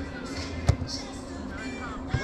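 A soccer ball struck once with a sharp impact about two-thirds of a second in, over distant shouting players.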